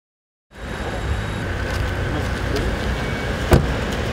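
Steady outdoor background rumble, with one sharp knock about three and a half seconds in.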